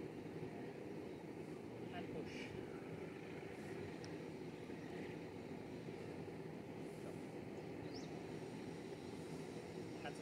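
Steady, low outdoor background noise with a few faint, short, high chirps; one near the end rises in pitch.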